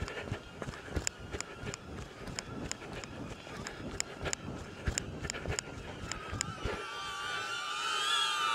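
Running footsteps on a grass path, about three strides a second. From about six seconds in, the steady high whine of small selfie drones' propellers comes in and grows as the footsteps stop.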